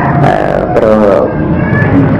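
A man's voice speaking Khmer into a handheld microphone in a sermon-style delivery, with drawn-out vowels.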